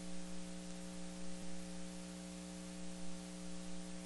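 Steady electrical mains hum, several fixed tones, with hiss underneath: the noise floor of the microphone and sound system with no one speaking.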